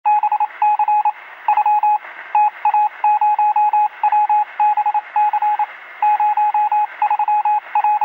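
Electronic beeping of one steady pitch, keyed on and off in short and long pulses like Morse code, over a continuous hiss of radio-style static.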